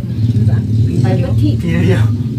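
An engine running steadily with a low drone, under a man's speech.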